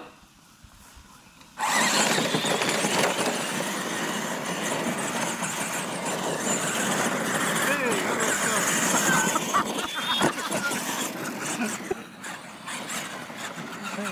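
Radio-controlled monster trucks launching off the line and racing over dirt: a sudden loud rush of electric motor and gear whine with tyre noise about a second and a half in, easing off near the end as they finish.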